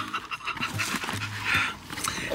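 A horse sniffing and blowing through its nostrils close to the microphone: several short breathy puffs with quiet gaps between.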